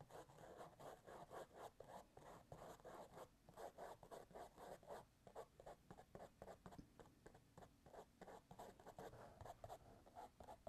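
Faint, quick, repeated scratchy strokes of a small paintbrush working paint onto canvas.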